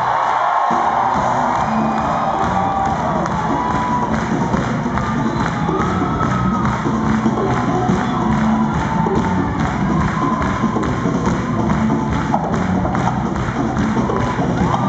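Live band playing an upbeat groove with a steady driving drum rhythm, including a talking drum struck with a stick, while a crowd cheers and whoops over the music.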